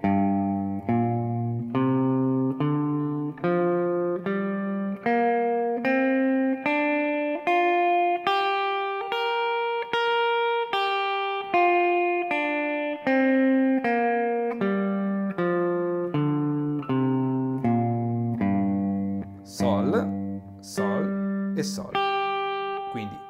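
Clean hollow-body electric guitar playing the G minor pentatonic scale one note at a time, in the first pattern around the third fret. It climbs from the low G and then comes back down at an even pace, about three notes every two seconds.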